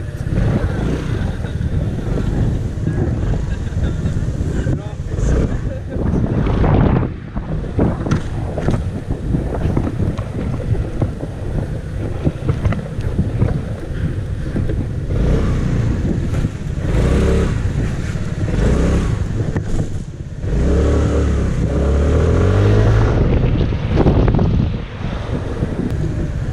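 Yamaha X-MAX 250 scooter's single-cylinder four-stroke engine running on the move, with heavy wind noise on the microphone. The engine pitch rises under acceleration twice, about two-thirds of the way in and again shortly after.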